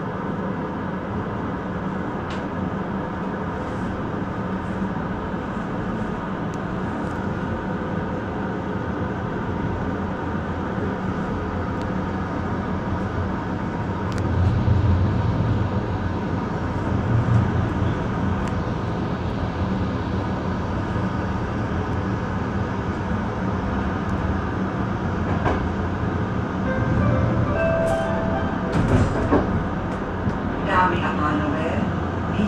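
Steady rumble of a passenger train's wheels on the rails, heard from on board as the train picks up speed out of a station. It swells louder a few times, and near the end there are a few sharp clicks as the wheels run over points.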